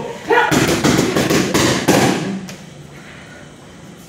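Boxing gloves striking focus mitts in a rapid flurry of punches, about six a second for a second and a half, then stopping.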